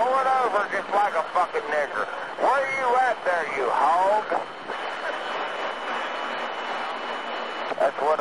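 Voice transmissions over a CB radio for the first four seconds or so, then about three seconds of open-channel radio hiss with a thin, steady high whistle before the voice returns near the end.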